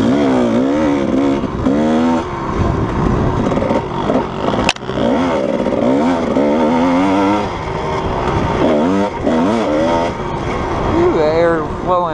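Kawasaki KDX220 two-stroke single-cylinder dirt bike engine being ridden on a sandy trail, its revs rising and falling over and over with the throttle. There is a sharp knock about five seconds in.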